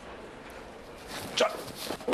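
A man shouts a name once, loudly, about a second and a half in, over quiet room tone.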